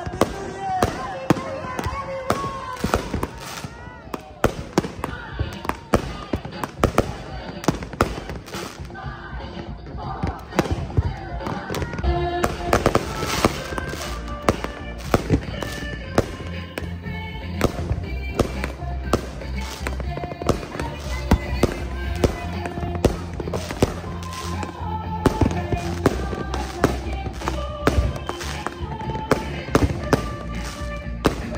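Aerial fireworks going off in a rapid, irregular string of sharp bangs and crackles. Crowd voices are heard, and music with a steady bass line comes in about twelve seconds in.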